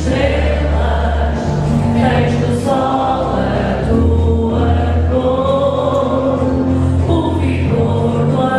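Background music: a choir singing long held chords over a sustained low bass.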